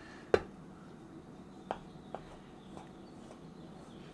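A kitchen knife knocking against a floured board: one sharp click about a third of a second in, then a couple of lighter taps as the blade is pressed down through sticky scone dough.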